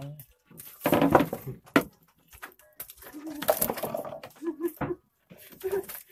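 Irregular rustling and clicking handling noises as a hooked fish held in a cloth is worked free by hand, with a few short low voice sounds.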